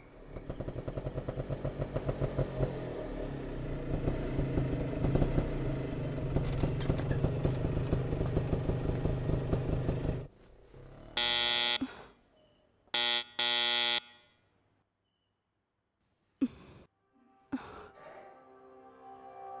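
Auto-rickshaw's small engine puttering in a fast, even beat for about ten seconds, then cutting out. A loud electric buzzing tone then sounds once for about a second and twice more briefly, and two faint knocks follow near the end.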